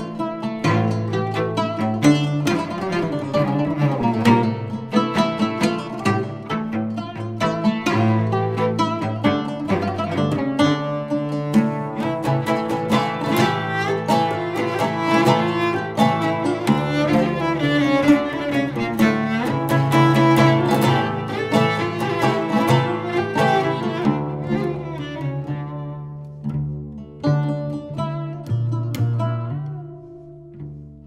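Cello and oud playing a Turkish dance tune (oyun havası) in makam Nihavent: quick plucked oud notes over held, bowed cello lines. The playing thins out and grows quieter over the last few seconds.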